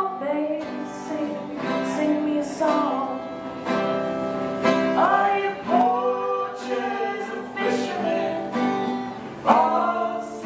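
A strummed acoustic guitar accompanying a woman and a man singing a folk song together, live at one microphone.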